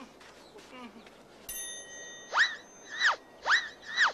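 A comedy sound effect: a high chiming ding about one and a half seconds in, then a run of swooping whistle-like tones, each rising and falling, about two a second.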